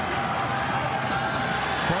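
Steady stadium crowd noise from the spectators of a football game, a continuous wash of many voices.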